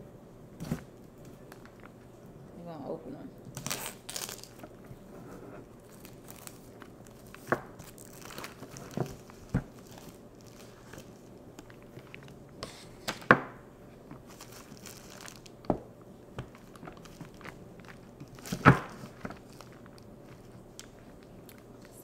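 A boxed pack of flash cards being unwrapped and handled: crinkling and tearing of the wrapping, then scattered sharp taps and clicks as the box and cards are knocked on a table.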